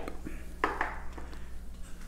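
A few faint clicks and knocks of a tobacco tin being set down and handled on a small side table, over a steady low electrical hum.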